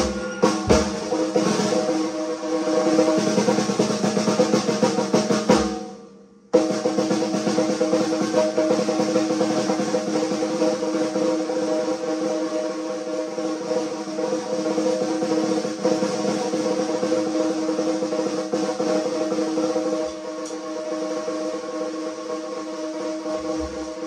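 Fast, continuous paradiddle rolls on a snare drum and drum kit. The playing stops abruptly about six seconds in, resumes half a second later, and turns softer near the end.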